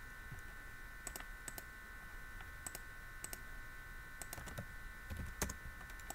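Sparse, irregular clicks of computer keyboard keys and a mouse, about ten in a few seconds, the loudest near the end, over a faint steady high-pitched electrical hum.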